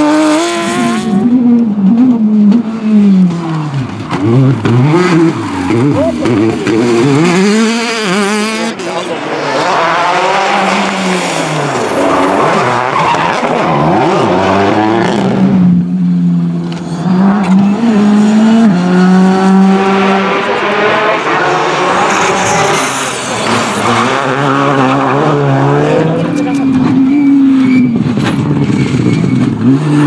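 Rally car engines revving hard through the gears, pitch climbing and then falling at each shift or lift, over and over, with tyre noise on the loose surface. A Porsche 911 rally car is heard at the start.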